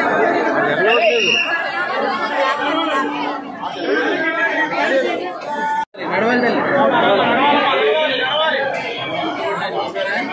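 Crowd of many people talking at once, a dense babble of overlapping voices. It drops out for an instant about six seconds in, then resumes.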